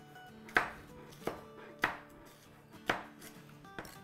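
Kitchen knife slicing a sweet pepper on a cutting board: five sharp knife strikes against the board, roughly a second apart, the last one lighter.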